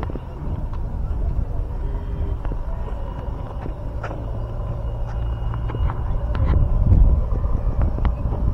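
Low rumbling wind noise on a body-worn action camera's microphone, with occasional light knocks and rustles from handling, swelling about seven seconds in.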